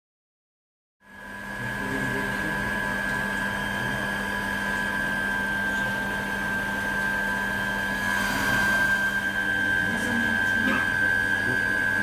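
High-pressure pump of an electroflocculation wastewater treatment unit running steadily, a hum with a high whine over it, starting about a second in.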